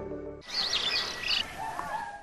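Small birds chirping over a steady outdoor hiss, starting about half a second in as the tail of a music track cuts off.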